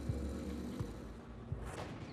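A low, steady background drone of soundtrack music, fading, with a brief whoosh near the end as the picture changes scene.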